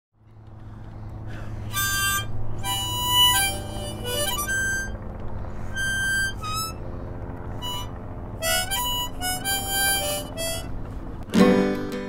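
Harmonica playing a folk melody in short phrases of held notes, over a low steady hum. About eleven seconds in, a louder, fuller chord comes in.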